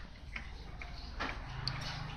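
A few light clicks and taps of a metal-tipped syringe tool and soldering iron against a receiver's circuit board as a capacitor is desoldered, the sharpest knock a little past one second in, over a steady low hum.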